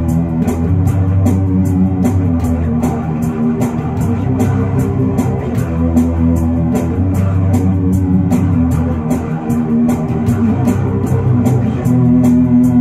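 Electric bass guitar played with the fingers, a rock bass line of low notes, with a steady beat of sharp ticks about four times a second behind it.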